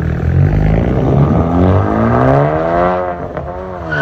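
10th-gen Honda Civic Si's turbocharged 1.5-litre four-cylinder, fitted with an aftermarket exhaust, accelerating away. The exhaust note rises steadily in pitch, drops briefly at a gear change about three seconds in, then climbs again.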